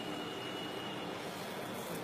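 Steady background hiss of room noise, with a faint high whine that stops about a second in.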